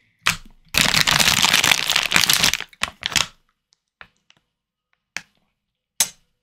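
Plastic candy bags crinkling as they are handled: a sharp crackle, then about two seconds of loud, continuous crinkling, followed by a few shorter crackles and scattered light ticks.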